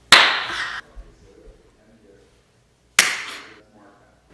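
Two sharp slap-like bursts, one at the start and one about three seconds in, each trailing off in a short hiss.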